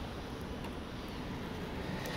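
2003 Ford Mustang's 3.8-liter V6 idling, heard from inside the cabin as a steady, quiet low hum.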